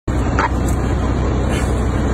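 Police car's engine idling, a steady low rumble.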